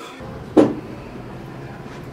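A single short, sharp knock about half a second in, over a steady low hum.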